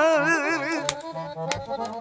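Accordion accompaniment to a Romanian lăutărească song, with a repeating bass-and-chord pattern. A held, wavering melody note fades out within the first second. Two sharp clicks come about one and one and a half seconds in.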